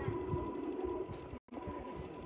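Wind buffeting a phone's microphone outdoors: an uneven low rumble, cut by a brief total dropout to silence about one and a half seconds in.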